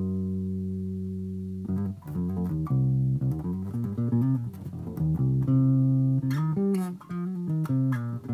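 Electric bass guitar played fingerstyle, demonstrating a blues-scale phrase with its chromatic blues note: a held low note rings for under two seconds, then a run of single notes, another held note around the middle, and more quick notes.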